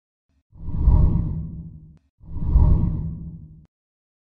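Two deep whoosh sound effects for an animated channel logo. The first comes about half a second in and the second just after two seconds; each swells quickly and fades away over about a second and a half.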